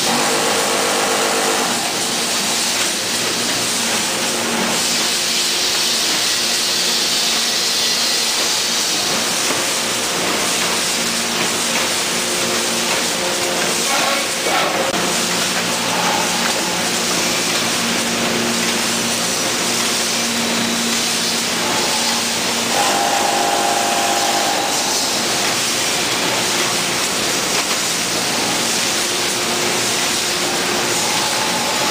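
Pasta packaging line running: a Raumak Multi Baler 300 baler and its conveyors giving a loud, steady machine noise with a continuous hiss and a low hum, and a brief higher tone about three-quarters of the way through.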